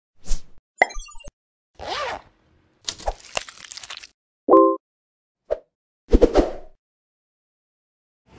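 Animated logo intro sound effects: a string of about seven short cartoon effects, pops, a swish, a sparkly run of rising tones and a brief held tone, each separated by a moment of silence.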